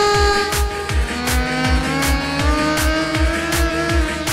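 Live Arabic wedding dance music: a long cane wind pipe plays a held note over a steady bass drum beat, about two and a half beats a second. From about a second in, a long held note glides slowly upward.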